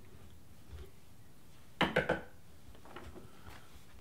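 Three quick knocks in a row about halfway through, like a knock at a door, over quiet room tone.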